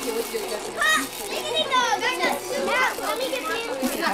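Children's high-pitched voices, several kids calling out and chattering over one another, with quieter grown-up voices underneath.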